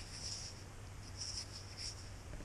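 Faint, intermittent scratching of fingertips rubbing dirt off a small stone arrowhead base, over a low steady hum.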